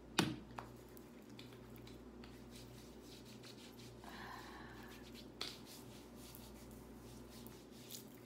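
Hands rubbing lotion into bare skin on the arms, a soft swishing with faint taps and ticks. There is a sharp click just after the start, the loudest sound, then a smaller one about half a second later. A steady low hum runs underneath.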